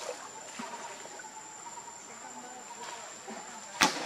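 A steady high-pitched insect drone in the trees, over a faint background hiss. A single sharp crack comes near the end.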